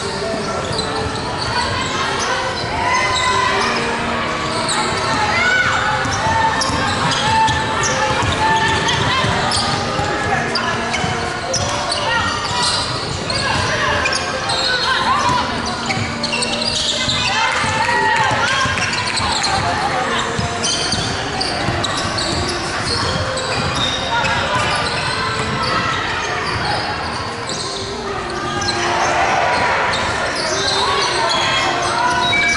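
Basketball game on an indoor hardwood court: a ball bouncing repeatedly, with players' voices calling out, echoing in a large hall.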